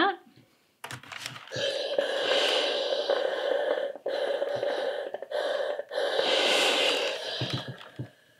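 Steam iron hissing as it presses a seam allowance open, in three bursts of steam of a couple of seconds each.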